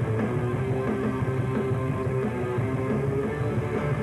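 A rock band playing live, with guitar prominent in a dense, steady wall of sound.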